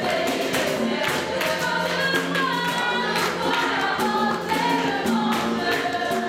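Gospel worship song sung by a group of voices, with percussion keeping a steady beat.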